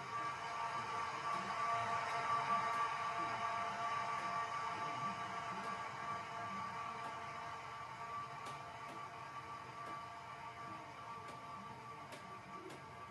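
A sustained drone of several held tones from a film soundtrack. It swells in, is loudest about two seconds in, then slowly fades.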